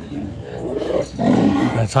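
Cattle lowing: a low, rough bellow, faint at first and strongest in the second half.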